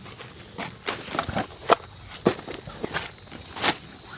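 Camping gear being pulled out of a nylon backpack and set down on dry leaf litter: irregular rustling of fabric and crunching dry leaves, with a few sharper clicks and knocks.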